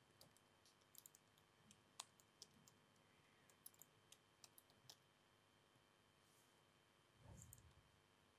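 Near silence with faint, irregular clicks of laptop keys being pressed. A soft low thud comes near the end.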